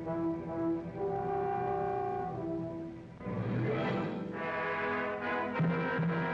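Orchestral music with brass: held notes for about three seconds, then a fuller, louder chord comes in and carries on to the end.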